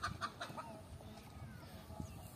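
A hen clucking in a quick run of calls, about six a second, that stops about half a second in, followed by a few fainter calls over a low rumble.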